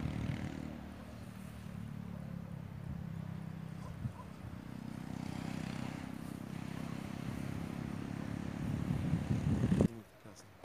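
A steady low rumble that swells near the end and then cuts off suddenly.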